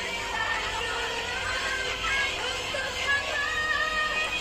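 Live band performance with a woman singing a slow ballad in long held notes.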